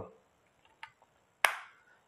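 Plastic clicks from a hand-held Mondial Super Groom-10 hair trimmer with its body-groomer attachment: a faint tick a little under a second in, then a sharper, louder click about a second and a half in.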